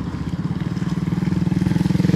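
Small motorcycle engine running at a steady pitch as the bike approaches, growing gradually louder.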